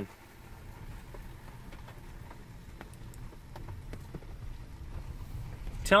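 Scattered light ticks of raindrops landing on the car's roof and windshield, over a low rumble, heard from inside the car's cabin.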